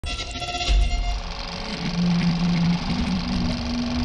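Title-sequence sound of a film projector running, a dense steady mechanical whirr, under low sustained musical tones that step up in pitch about two seconds in.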